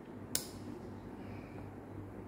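Quiet room tone with a steady low hum, broken by a single sharp click about a third of a second in.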